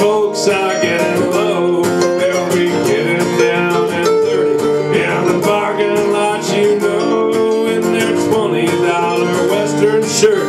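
Two acoustic guitars playing a country song live: a steady strummed rhythm with picked melody lines over it.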